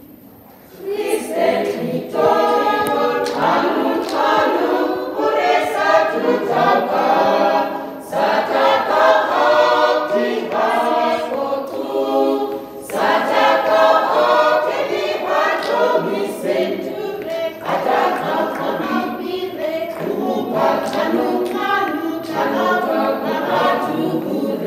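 A small church choir of mostly women's voices singing a gospel song a cappella, starting about a second in and carrying on in phrases with brief breaks between them.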